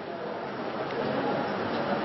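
Steady hiss of background noise, growing slightly louder, with faint, indistinct voices in the background.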